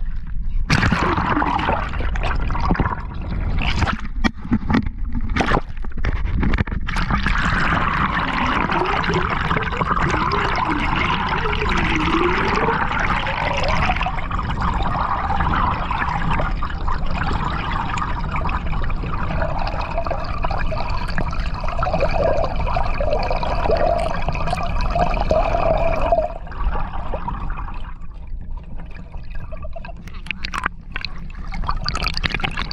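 Water gurgling and sloshing around a handheld camera as it is dipped in and out of the water, with brief sudden cut-outs in the first few seconds. It then settles into a steady muffled underwater rush, with faint steady tones in the middle stretch.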